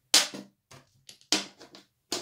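Wooden draughts pieces being set down on and lifted off a wooden board during an exchange of pieces: two sharp clicks a little over a second apart, each followed by a few lighter taps.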